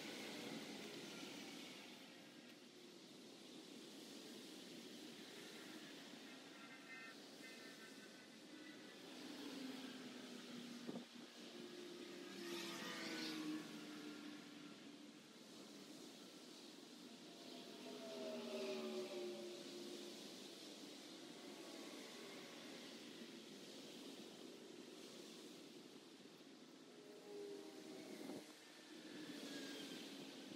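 Faint traffic noise from a nearby highway, with vehicles passing every few seconds. Passes swell loudest about ten, thirteen and nineteen seconds in, their engine tones dropping slightly in pitch as they go by.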